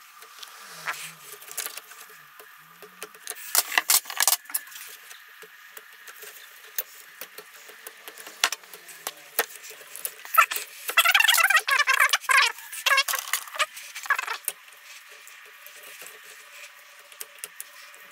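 Metal fork parts clicking and clinking as the spring is worked off a pitbike's Marzocchi-copy fork cartridge, with the nut held stuck by threadlocker. The clinking comes in irregular runs, busiest around four seconds in and again, louder, for a couple of seconds around eleven seconds in.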